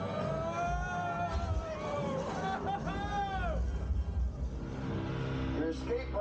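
Theme-park ride soundtrack of an escape pod's descent and crash landing: a heavy low rumble throughout, with pitched tones that glide up and down over the first three and a half seconds. A voice starts just before the end.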